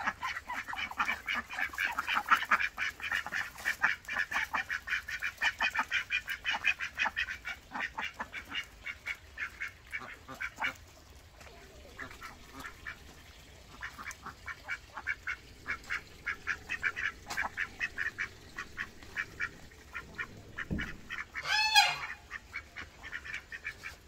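A group of domestic ducks quacking in fast, continuous chatter that dies down a little past the middle and then picks up again. There is one louder, wavering call near the end.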